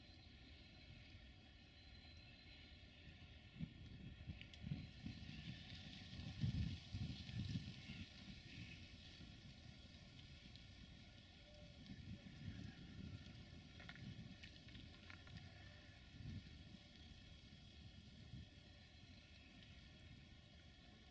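Near silence: faint outdoor ambience with irregular low gusts of wind buffeting the microphone, strongest about six to eight seconds in.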